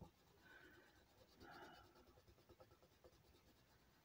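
Faint scratching of a felt-tip marker colouring in a small icon on a paper sheet, in short soft strokes; otherwise near silence.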